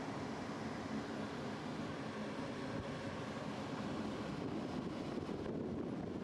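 Homemade waste-oil burner flame swirling in a cyclone vortex, burning with a steady rushing noise that stays even throughout.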